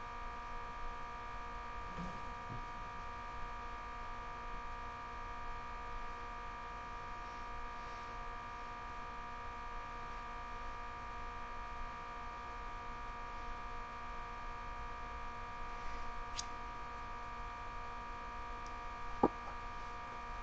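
Steady electrical hum made of several constant tones, with a couple of brief clicks late on, the sharper one near the end.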